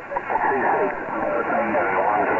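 A distant station's voice received over an 11-metre CB transceiver's speaker, thin and muffled, under a steady hiss of band noise; the voice comes in just after the start.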